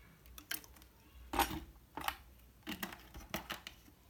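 Several light knocks and clicks of a plastic water bottle and measuring cup being handled and set down on a serving tray.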